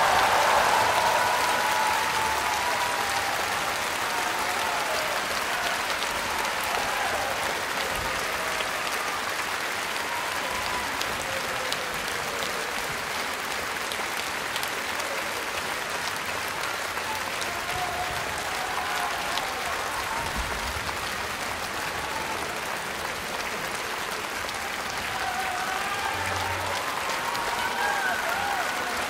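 Concert audience applauding steadily, with a few voices calling out over it at the start and again near the end.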